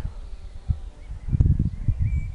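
Gusty low rumble of wind on the camera microphone in a pause between speech, with a single small click about 0.7 s in.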